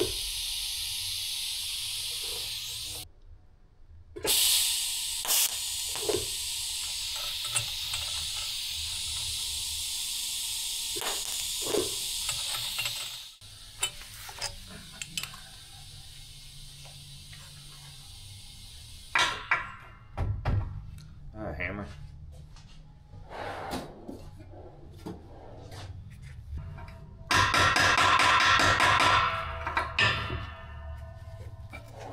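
TIG welding arc hissing steadily while a stainless steel tube is tacked, with a short break about three seconds in, and stopping about thirteen seconds in. Light clinks and knocks of the tube and tools being handled follow, and a loud steady hiss returns for the last few seconds.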